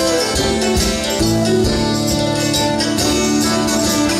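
Live acoustic band playing an instrumental passage: strummed acoustic guitar and mandolin over hand percussion.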